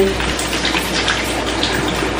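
Running water: a steady, even rush.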